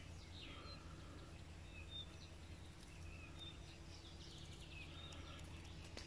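Quiet outdoor background with a steady low hum and a few faint, short bird chirps scattered throughout.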